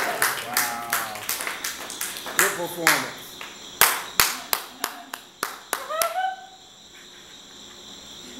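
A small audience applauding with scattered, separate hand claps and a few voices calling out. The clapping thins and stops about six seconds in.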